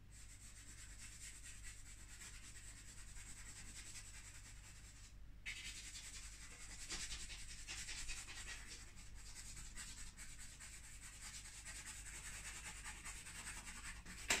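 A drawing stick rubbing and scratching across paper in steady strokes. It stops briefly about five seconds in, then comes back a little louder for a few seconds. A steady low hum lies underneath.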